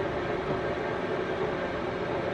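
Steady background hum with a faint constant tone and no distinct knocks or other events.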